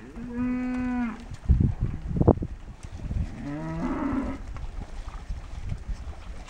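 Cattle mooing twice: a steady call about a second long right at the start, and a second call that wavers in pitch about three seconds in. Two heavy low thumps fall between the calls.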